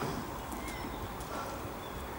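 Quiet outdoor background: a steady low rumble with a few faint, brief bird chirps.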